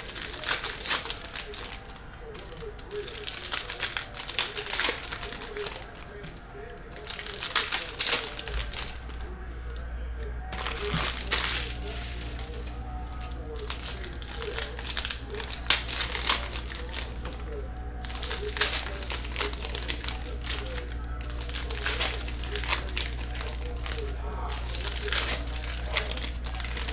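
Foil trading-card packs crinkling as they are torn open, with cards being handled in irregular bursts of crackle. A steady low hum comes in about a third of the way through.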